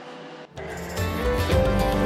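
Background music begins about half a second in and grows louder, with many sustained pitched notes over a steady beat.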